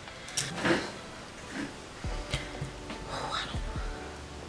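Soft clicks, scrapes and a few low knocks as a knife digs at a stuck wine cork and the bottle is handled, over faint background music.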